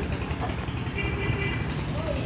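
Street background noise: a steady low rumble of distant traffic, with a brief faint higher tone about a second in.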